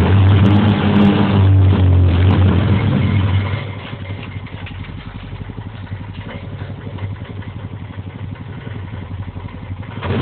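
ATV engine running loud and steady, then dropping to a much quieter, evenly pulsing run about three and a half seconds in.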